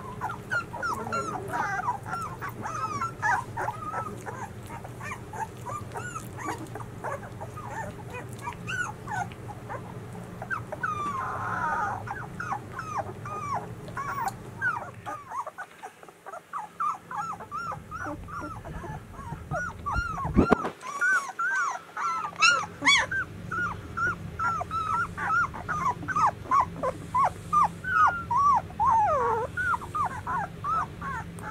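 A litter of 13-day-old White Swiss Shepherd puppies whimpering and squeaking almost without pause, many short high-pitched cries overlapping. A single thump about twenty seconds in is the loudest sound.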